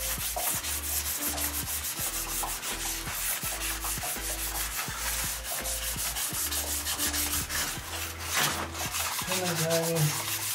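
Charcoal rubbed quickly back and forth over the back of a paper drawing, a continuous dry scratchy rubbing of quick repeated strokes. The charcoal coating turns the drawing into a transfer sheet for tracing onto canvas.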